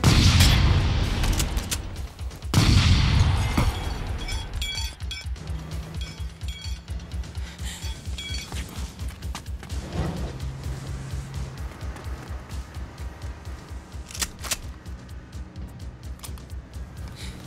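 Two loud shotgun blasts about two and a half seconds apart, each with a long echoing tail, over a pulsing film score with a steady low beat; a few lighter hits follow later.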